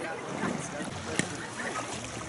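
Shallow sea water sloshing around wading feet at the shoreline, with faint indistinct voices and some wind on the microphone.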